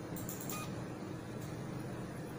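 HIFU machine emitting a short electronic beep about half a second in, with a few faint high clicks around it, over a steady low hum while it fires its treatment shots automatically.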